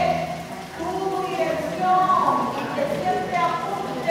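A person talking, with the words not clearly made out.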